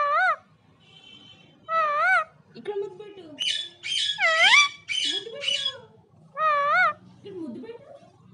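Pet parakeets calling: a loud warbling call that rises and falls, given three times, and in the middle a quick run of about five harsher screeches.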